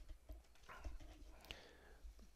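Near silence: faint room tone, with a soft, faint hiss a little before the middle and a single light click about one and a half seconds in.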